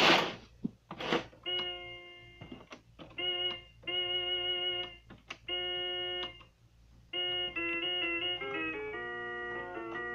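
Portable electronic keyboard played by ear: a few separate held chords whose notes do not fade, then a quicker melody of changing notes from about seven seconds in. A loud thump comes at the very start.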